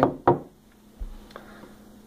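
A glass water pitcher set down on a wooden table: one sharp knock about a quarter second in, then a soft low thump about a second in.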